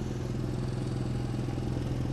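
An engine running steadily: a low, even hum that holds unchanged throughout.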